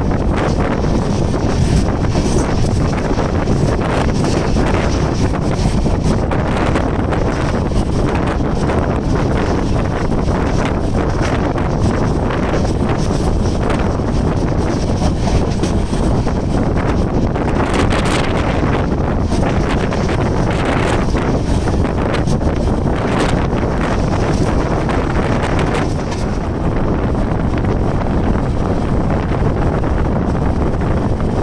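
Wind buffeting the microphone held out of a moving passenger train, over the steady running noise of the coach on the rails.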